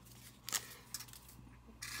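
Sugar packet being emptied over a paper cup of coffee: faint paper rustling with a few light ticks, the clearest about half a second in.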